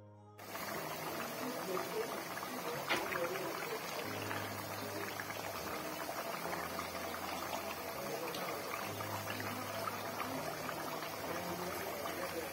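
Sliced potatoes deep-frying in hot oil: a steady, crackling sizzle that starts about half a second in, with soft background music underneath.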